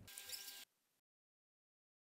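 Near silence: faint room hiss for about half a second, then complete silence.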